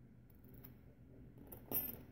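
Faint handling of a metal padlock and its lock cylinder, with one brief metallic clink near the end.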